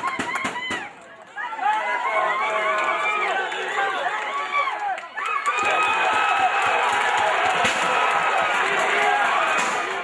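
Crowd of spectators shouting, with a brief lull about a second in, then swelling into louder cheering from about halfway.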